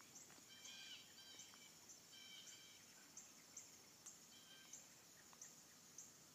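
Faint rural morning ambience of birds and insects: scattered short chirping calls and a thin high chirp repeating roughly twice a second.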